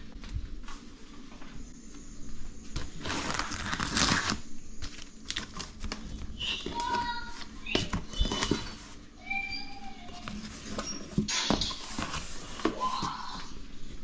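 Cardboard shipping box being opened by hand: tape and plastic packing-list pouch peeled off, and flaps pulled and folded back, in irregular rustling and scraping bursts. A few short high-pitched squeaks sound in between.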